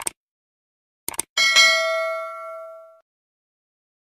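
Subscribe-button animation sound effect: a mouse click at the start and two quick clicks about a second in, then a notification bell dings, rings and fades out over about a second and a half.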